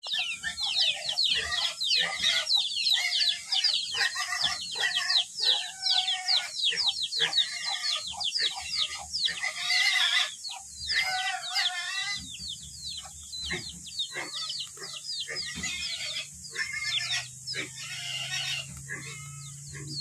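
Outdoor morning bird chorus: many birds chirping rapidly in short falling notes, with domestic chickens clucking among them. A low steady hum comes in about halfway through and grows stronger near the end.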